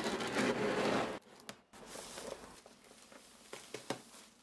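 Plastic shrink-wrap being slit with a knife and peeled off a cardboard box, crinkling and tearing. It is loudest in about the first second, then goes on as softer crinkles with a few small clicks.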